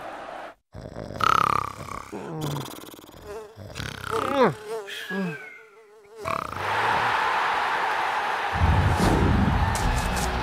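Cartoon soundtrack: a wavering buzz with a few falling groans or sighs from the two trapped players. From about six seconds, a stadium crowd cheering takes over, with a deep rumble joining near the end.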